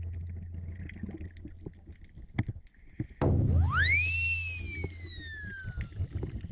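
Scuba diver's regulator heard underwater. Faint breathing noise gives way, about three seconds in, to a loud low buzz of exhaled air, with a whistle that rises quickly and then slowly falls.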